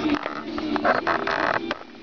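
Handling noise: irregular rustling and small knocks while a marker is fetched from a cabinet, loudest as a noisy rasp about a second in.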